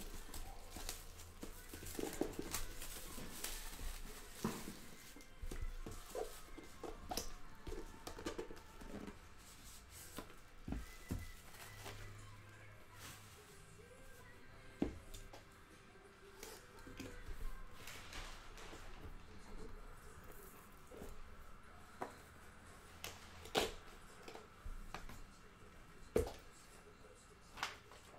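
Faint, irregular clicks, taps and rustles of hands handling and opening a cardboard trading-card box and sliding out the cards inside.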